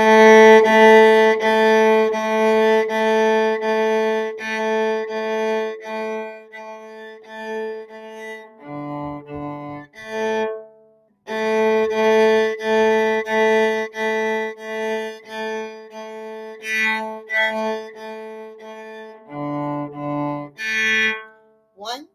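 Solo cello, bowed, playing a simple tune in short separate strokes, mostly repeated notes on one pitch. The line dips to lower notes about nine seconds in and again near the end, with a brief break about eleven seconds in where the phrase starts over.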